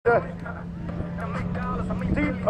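Voices over a steady low drone of car engines running, with a short loud burst of speech at the very start.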